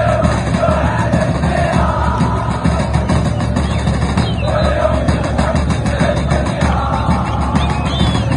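Background music: a song with a singing voice over a steady heavy bass.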